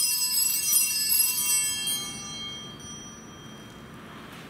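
Small altar bells (sanctus bells) rung in a shimmering jingle that dies away over about three seconds, marking the elevation of the chalice at the consecration.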